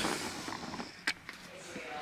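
Faint handling noise as a phone camera is moved around, with a single click about a second in.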